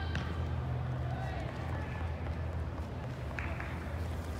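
Indoor soccer hall ambience: a steady low hum with faint, distant voices of players and spectators calling, and a single sharp knock just after the start.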